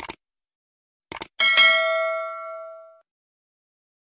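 Subscribe-button sound effect: a pair of quick mouse clicks, two more clicks just after a second in, then a bright bell ding that rings and fades away over about a second and a half.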